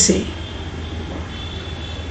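A pause between words filled by a steady low background hum, with a faint thin high whine over it; the tail of a spoken word is heard right at the start.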